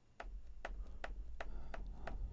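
Four light button clicks at uneven spacing: the hardware buttons of a Korg KP3 Kaoss Pad being pressed.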